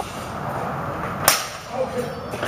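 Sparring longsword blades striking together: one sharp clash about a second in, followed by a couple of lighter contacts.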